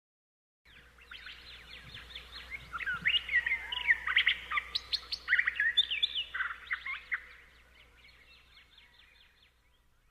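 Many small birds chirping and twittering together over a faint low hum, building up in the middle and fading away near the end.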